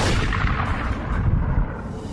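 Cinematic explosion sound effect: a sudden blast at the start, then a deep rumble that fades away.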